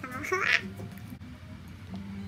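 A girl's short nasal vocal sound, muffled by the food in her mouth, in the first half-second, then quiet.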